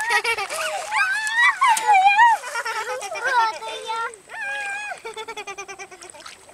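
Young children's high-pitched squeals and shouts without words, several drawn-out cries, with a quick run of short pulsing calls near the end.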